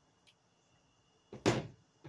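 A single short thump about one and a half seconds in, over faint steady chirring of crickets.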